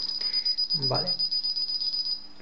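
Paradox K641 alarm keypad's beeper giving one long, steady high-pitched beep as a user code is entered to disarm the alarm.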